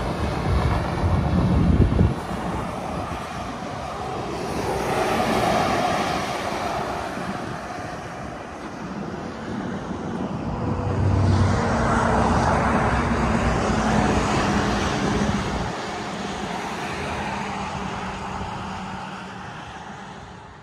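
Highway traffic, semi trucks among it, passing close by; the rush of the vehicles swells and fades twice.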